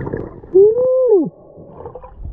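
A single muffled, voice-like hum heard underwater, rising slightly in pitch and then sliding down over about three quarters of a second. It comes after a short burst of rushing water noise at the microphone.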